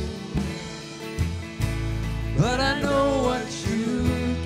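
Man singing into a microphone while playing an acoustic guitar, with a held, wavering sung line about halfway through.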